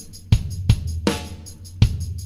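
Instrumental opening of a song: a drum-kit beat of kick drum, snare and hi-hat over a steady low bass note.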